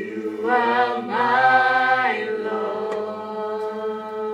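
A man singing a slow worship song into a microphone: two long held phrases with vibrato in the first half, over steady held instrumental chords that continue throughout.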